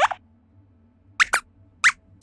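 Four short, high-pitched rising squeak sound effects: one at the start, two in quick succession just past a second in, and one near the end. They are the squeaky voice of a robot lab-rat puppet character answering a question.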